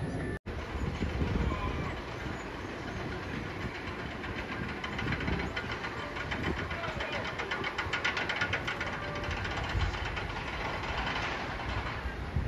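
Cobra's Curse steel roller coaster train rumbling along its track, with a run of rapid, even clicking in the middle stretch.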